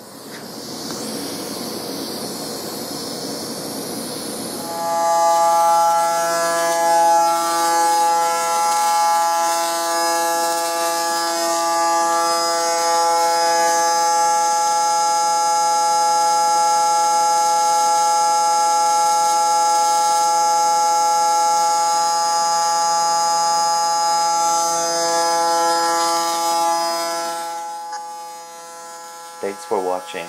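AC TIG welding arc from an HTP Invertig 221 DV AC/DC inverter welder. It starts as an even hiss, then from about five seconds in settles into a steady buzzing hum with many overtones, and eases off a few seconds before the end.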